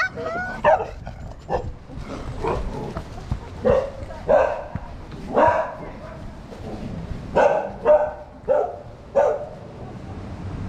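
A dog barking repeatedly: about a dozen short barks with uneven gaps between them.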